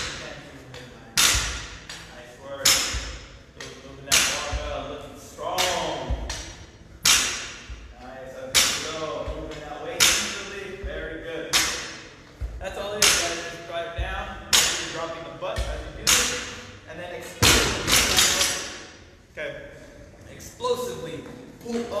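Barbell with bumper plates and a kettlebell set down on a rubber gym floor over and over during high pulls: a sharp thud with a short ringing tail about every one and a half seconds.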